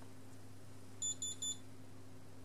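RusGuard R-10 EHT reader-controller's buzzer giving three quick, high beeps about a second in as a freshly enrolled user key is presented: the key is accepted and access is granted.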